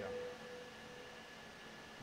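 Faint steady hum from the public-address sound system, with a few thin held tones over low background noise.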